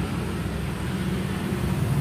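A steady low droning hum from a running motor, with no words over it.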